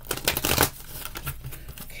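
Tarot deck being riffle-shuffled: a rapid flutter of cards falling together in the first half-second or so, then quieter handling of the deck.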